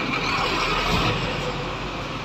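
Road traffic going by: a steady rumble and rush of passing vehicles that eases off a little after about a second.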